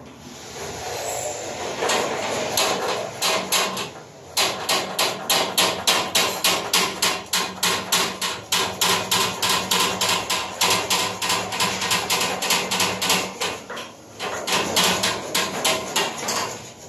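Hammering: fast, even blows, about four a second, with a short break about four seconds in, stopping near the end.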